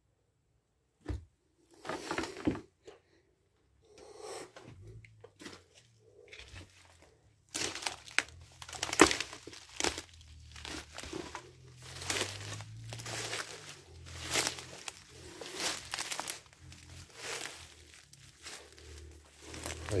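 Footsteps and brushing through dense forest undergrowth: dry leaves, twigs and ferns crunching and crackling in irregular bursts, growing busier and louder about halfway through.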